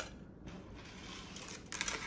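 Small clinks and clicks of metal wire jewelry and chain being handled on a tabletop: one sharp clink at the start, then a few light metallic clicks near the end.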